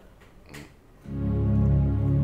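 Electronic keyboard in a strings voice, a held low chord starting about a second in and sustaining steadily without fading.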